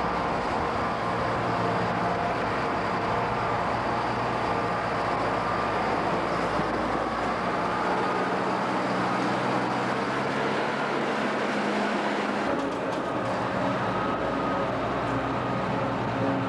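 A motor grader's diesel engine running steadily as the machine moves past close by over fresh asphalt, its low engine note shifting a little partway through.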